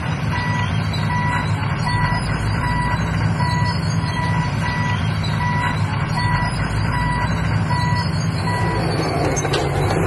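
Reversing alarm of a heavy earthmoving machine beeping steadily, about one beep every three-quarters of a second, stopping near the end. Under it, the heavy machinery's engines run with a steady low drone.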